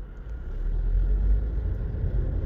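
A low, steady rumble with no speech, swelling slightly and loudest just past the middle.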